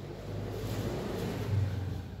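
Wooden spatula stirring cooked rice with mint paste in a stainless steel bowl, making a steady low scraping and rubbing noise.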